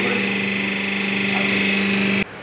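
Electric motor of a paper plate making machine running with a steady hum.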